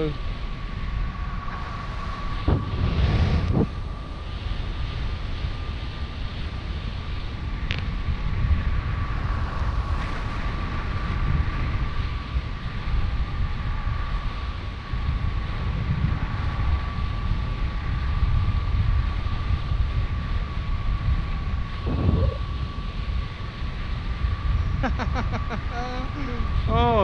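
Wind buffeting the microphone of a paraglider pilot's flight camera, a steady low rush with a few stronger gusts. A thin steady high tone runs underneath, and a string of quick repeated beeps starts near the end.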